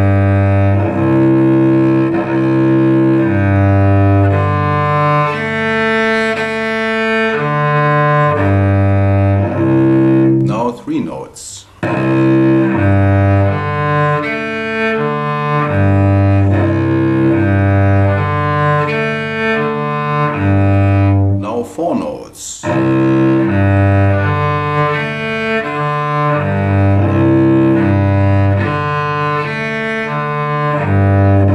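Cello bowing open strings, two adjacent strings tied in each bow: a steady run of sustained notes changing about once a second, alternating low and higher. The playing breaks off twice, about a third and two-thirds of the way through, each time with a short knock.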